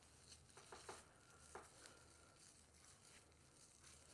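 Near silence: faint rustling and a few soft clicks from hands flat twisting hair, most of them in the first second and a half.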